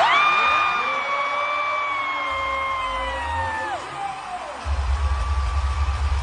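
One voice holds a long, high whoop for almost four seconds, sliding slowly down in pitch before it drops off. Then a deep, heavy bass of music comes in about two-thirds of the way through.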